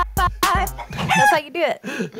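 A burst of laughter from several people, broken into short high whoops that fall steeply in pitch.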